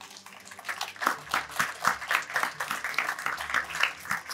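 A small crowd applauding: many hands clapping at once, building up about half a second in and carrying on steadily.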